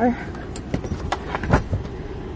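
A handful of small clicks and knocks from things being handled and set down inside a car, the loudest about one and a half seconds in.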